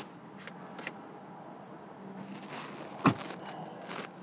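Low, steady hum inside an idling pickup truck's cab, with a few faint ticks and one sharp click or knock about three seconds in.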